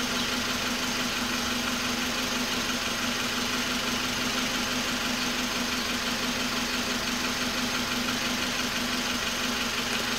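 Mazda's engine idling steadily with a constant hum, its fuel injector firing under test.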